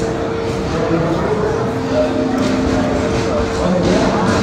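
Indistinct chatter of many people in a large, busy hall, with a few steady held tones running under it.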